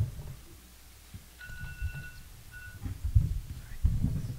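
Soft, dull low thumps over quiet room tone, several close together near the end. A faint, high, steady beep sounds twice around the middle.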